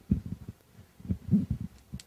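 Low, muffled thumps and rumbles in two short bunches, one just after the start and one about a second in.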